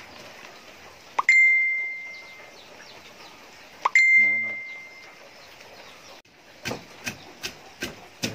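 Two clear ringing dings about two and a half seconds apart, each opening with a short rising note and dying away over about a second. Then, near the end, a wooden pestle pounding stream crabs in a wooden mortar, about four strikes a second.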